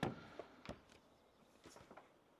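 A quiet pause with a few faint, brief clicks. The loudest is a short tap at the very start that fades quickly, and the others are weaker.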